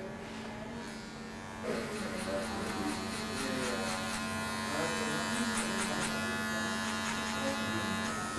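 Electric hair clippers running with a steady hum as they cut a fade at the back of the head. The level rises slightly about two seconds in, as the blade works through the hair.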